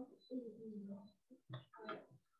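A faint, indistinct voice talking in short phrases, too quiet for the words to be made out.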